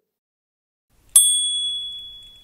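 A single bright bell ding, struck once about a second in and ringing away over a second and a half: an outro sound effect.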